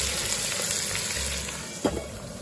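Chunks of meat in chili paste sizzling in a large aluminium pot, a dense steady hiss. Near the end there is a single sharp clank as the pot's metal lid is handled.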